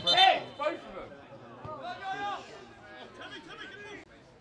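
Men's voices shouting and calling during a football match. Loud shouts open it, then quieter calls and chatter go on, and there is a brief low knock at the very start.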